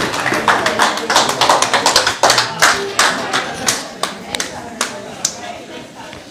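Scattered hand claps, coming fast and irregular at first, then thinning out and growing quieter, over a low murmur of voices.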